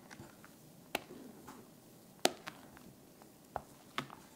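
Silicone spatula folding chiffon cake batter in a glass mixing bowl: quiet, soft working of the batter with three sharp knocks against the glass, about a second and a quarter apart, the middle one loudest.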